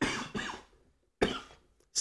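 A man coughing: two short coughs close together at the start, then a shorter noisy sound a little past a second in.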